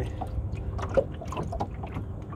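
Water lapping and splashing along the hull of a small sailing dinghy underway, a run of small, irregular splashes over a steady low rumble.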